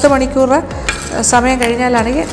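A woman speaking, with a short pause about a second in.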